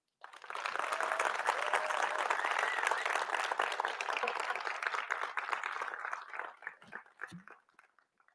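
Audience applauding at the end of a talk: many hands clapping in a dense, steady patter that thins out and dies away near the end.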